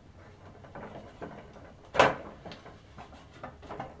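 Hard plastic toy steering wheel being pressed onto its plastic steering column: faint handling rustles and small clicks, with one sharp snap about halfway through as the wheel seats.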